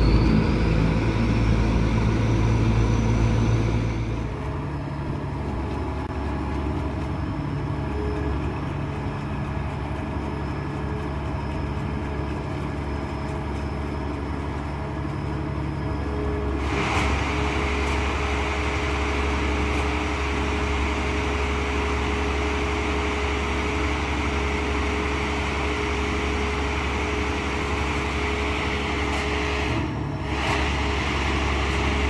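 Engine of an aquatic weed harvester boat running steadily. A high whine rises over the first few seconds and the low engine note is loudest for about four seconds, then settles. Near the middle a steady whine and a rushing noise come in.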